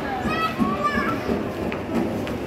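A toddler's high voice calling out in short rising and falling sounds during the first second, over a background murmur of people's voices.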